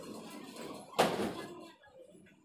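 A single sharp bang about a second in, dying away over about half a second, over faint background voices.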